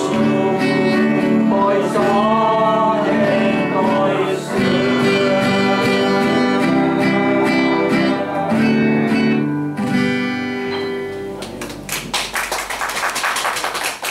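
A man sings a gospel song to his own acoustic guitar, and the song closes on held guitar chords. About twelve seconds in the music stops and audience applause begins.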